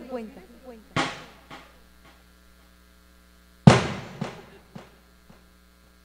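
Steady electrical mains hum in the broadcast sound system, broken by two sudden sharp sounds that fade quickly, about a second in and again a little past the middle, the second the louder.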